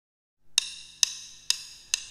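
Four sharp clicks of drumsticks struck together, evenly spaced about half a second apart: a drummer's count-in at the song's tempo before the band comes in.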